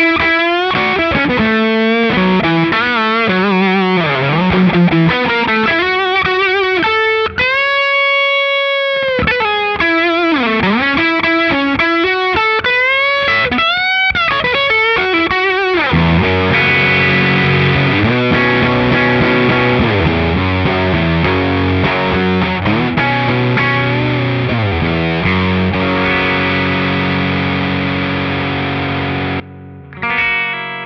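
Gibson Les Paul on its humbuckers, played through the Hamstead Subspace overdrive stacked with the Hamstead Ascent boost at a higher gain setting. It plays overdriven single-note lead lines with string bends and one long held note. From about halfway it switches to sustained ringing chords, which fade out and stop just before the end.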